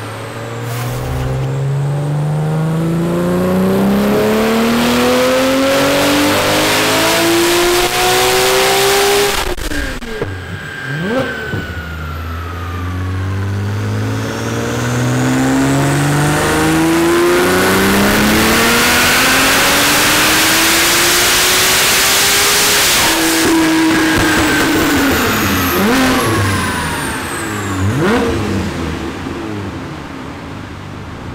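Twin-turbo R35 Nissan GT-R with an Alpha 18X kit making wide-open-throttle power pulls on a chassis dyno. Its 3.8-litre V6 climbs steadily through the revs until it cuts off sharply about nine seconds in. After a couple of quick blips a second pull climbs until about 23 seconds in, then the revs fall away and it blips again near the end.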